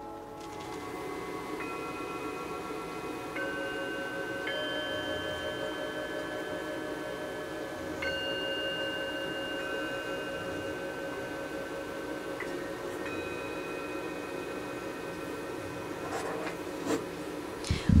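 Several bronze singing bowls struck one after another with a mallet, a new tone entering every one to three seconds while the earlier ones keep ringing and overlap.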